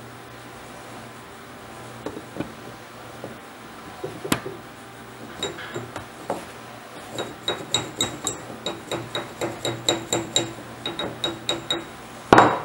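Hammer tapping a snug-fitting Trapdoor Springfield front sight blade into its barrel sight base, metal on metal. A few scattered taps come first, then a steady run of light taps, about three a second, from about halfway, each with a short metallic ring.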